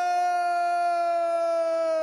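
Ring announcer's voice drawing out the last syllable of the fighter's name, Chilson, in one long held shouted note that sags slightly in pitch.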